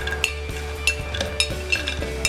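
Knife blade clinking and scraping against a china plate as fried almonds and walnuts are pushed off into a plastic blender beaker: a few sharp clinks, over steady background music.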